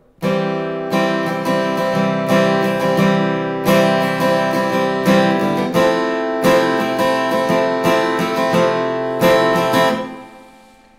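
Cutaway acoustic guitar strummed in a steady rhythm, playing a C major to F chord progression with a new stroke every half second or so. The strumming stops near the end and the last chord rings out.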